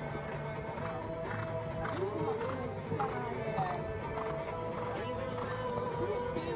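Hoofbeats of a horse cantering on sand arena footing, as irregular knocks over background music.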